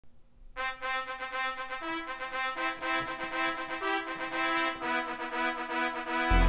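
Recorded backing track opening with a brass fanfare: short, repeated pitched notes in a steady rhythm, starting about half a second in.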